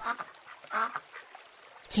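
Duck quacking: several short quacks, mostly in the first second.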